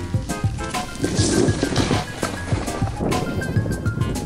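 Background music with a steady beat and melodic notes, with a brief swell of hiss between about one and two seconds in.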